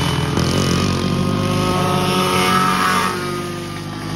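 Racing go-kart engines running hard on track, several at once, their pitch rising and falling as the karts accelerate and pass. The sound drops back a little about three seconds in.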